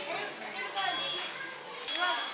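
Indistinct chatter of children's and other people's voices at a low level, with no clear words.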